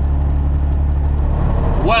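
Semi-truck's diesel engine and road noise heard from inside the cab while cruising on the highway: a steady low drone. The drone drops away about one and a half seconds in.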